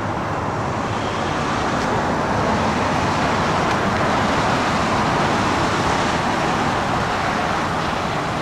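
Steady rushing noise of passing road traffic, swelling a little through the middle and easing slightly near the end.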